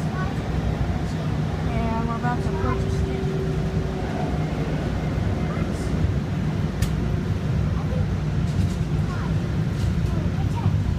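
Steady low rumble of a DART light-rail train heard from inside the moving passenger car, with faint voices about two to three seconds in and a sharp click near seven seconds.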